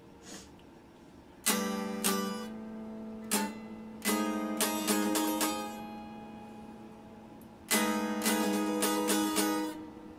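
Stratocaster-style electric guitar with single notes picked in short, halting phrases. After a quiet start come a few separate notes, then a quick run that rings out, a pause, and a denser phrase near the end.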